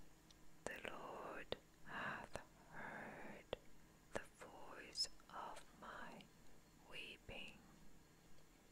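Close, quiet whispered speech in short phrases, with small clicks between them.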